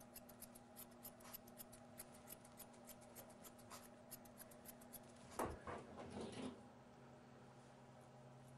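Thinning shears snipping a Shih Tzu's long coat behind the ear: faint, quick, even snips, about five a second, that stop after about four and a half seconds. A brief louder handling sound follows about a second later.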